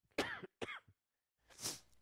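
A man coughing twice, short and throaty, into his hand, followed by a faint intake of breath near the end.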